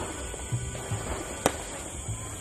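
A single sharp firecracker bang about one and a half seconds in, with a few fainter pops, over music with a repeating low note.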